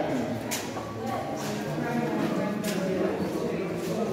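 Indistinct talk of several people inside a cave passage, with a few sharp clicks, like footsteps on stone, among it.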